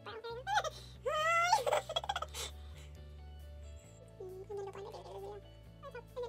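A person's voice making a drawn-out, rising vocal sound about a second in, with shorter vocal bits later, over steady background music.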